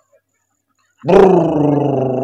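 A man's long drawn-out vocal sound, one held note starting about a second in with a slightly falling pitch.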